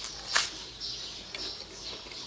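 Small birds chirping repeatedly in the background, with one sharp click about a third of a second in.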